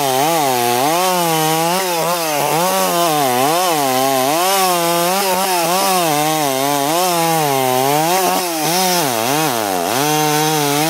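Two-stroke chainsaw at full throttle cutting through logs, its engine pitch dipping and recovering about once a second as the chain loads up in the wood, with a deeper dip and rise near the end.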